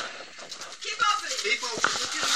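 Voices talking, over a rustle of paper in the first second.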